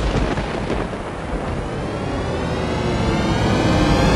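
Thunder-crack sound effect whose rumble fades over the first two seconds, as a music swell of sustained tones builds and grows louder toward the end.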